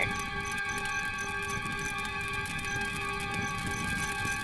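Soft background music holding a sustained chord, under a steady high chirping of crickets repeating about three times a second.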